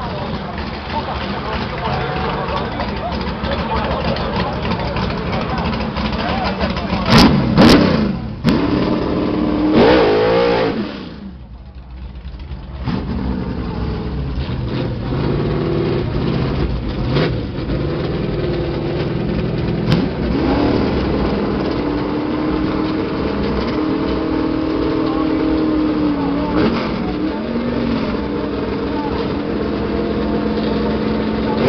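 Drag-race car engines at the start line. They rev hard with a few sharp cracks, drop away for a moment, then settle to a steady idle with occasional blips.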